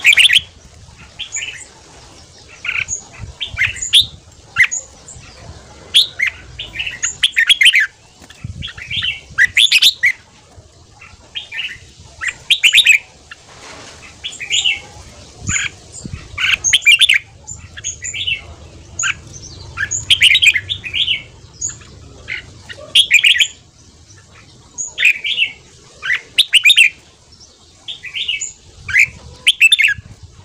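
Red-whiskered bulbul singing short, loud, warbling phrases in quick succession, one burst every second or so with brief pauses between.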